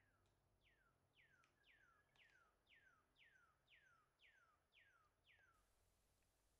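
A bird calling faintly: a series of about ten clear whistled notes, each sliding down in pitch, about two a second.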